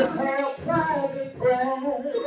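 A man's voice over a microphone, preaching in a sung, chanted style, with pitched phrases that bend and are held briefly one after another.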